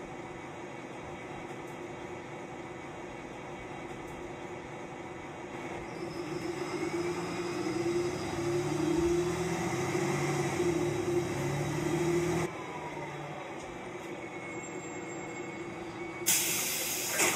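Interior sound of a city transit bus underway: steady engine and road noise that grows louder from about six seconds in, with a faint rising whine, then drops back suddenly about twelve seconds in.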